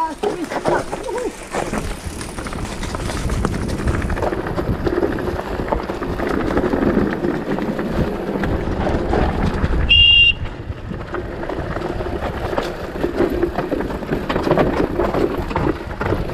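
Mountain bike riding over a rough, rocky trail: continuous rumble and rattle from the bike, with wind noise on the helmet-camera microphone. About ten seconds in there is a brief, high-pitched ring, the loudest moment.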